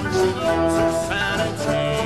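Acoustic folk band playing an instrumental passage: plucked and strummed string instruments under long held melody notes.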